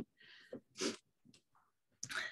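A quiet pause broken by a short, breathy intake of breath from the speaker a little under a second in, with faint softer breath noise before it and a couple of tiny clicks.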